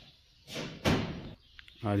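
A loud slam about a second in, with a short noisy lead-in just before it. A man's brief voice follows near the end.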